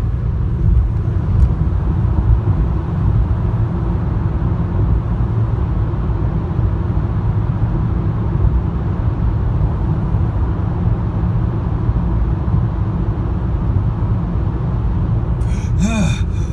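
Road and engine noise of a car at highway speed heard from inside the cabin: a steady low rumble while driving through a tunnel.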